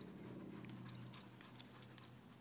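Faint, soft ticks of dogs' paws shifting on a dirt road, a few scattered taps over a low steady background hum.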